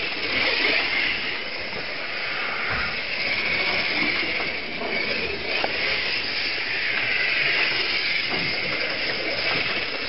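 A 1/24 scale Monogram Slingshot dragster slot car, with a 26,000 rpm electric motor, running laps on a slot-car track. It gives a steady high whine and hiss that wavers in pitch as it speeds up and slows around the curves.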